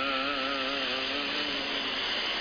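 A long held chanted note: one steady pitch with a slight waver, sustained without a break.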